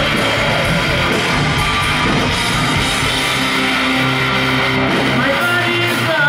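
Live hard-rock band playing loud, with distorted electric guitars and drums. It is heard from within the concert crowd, and held guitar chords ring out in the second half.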